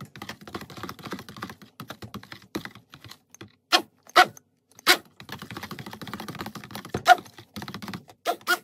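Stick blender running in a bowl of raw olive-oil-and-lye soap batter, with a rapid clattering rattle and several sharp knocks of the blender head against the bowl.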